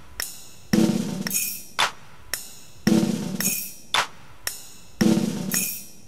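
Drum-kit rhythm from a Yamaha PSR-510 keyboard's accompaniment: a repeating pattern of snare and bass-drum hits with hi-hat, the figure coming round about every two seconds.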